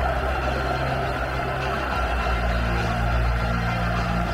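Music with sustained low bass notes over the steady hubbub of a large stadium crowd; the bass notes change about halfway through.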